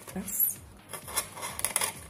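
Crisp clicking and rustling of artificial leaves on toothpick stems being pushed and worked into the filling of a small box by hand, with a quick run of crackles near the end.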